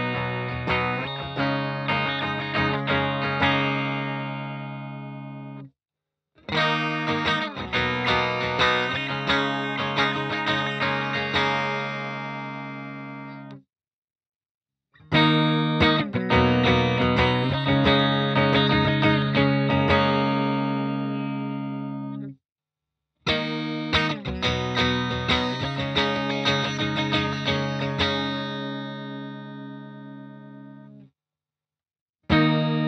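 Schecter C-1 Apocalypse electric guitar with its Schecter USA Apocalypse humbuckers, played through an amp. It plays four short passages, each of picked notes that settle into a ringing chord, fades, and cuts off sharply into a brief silence.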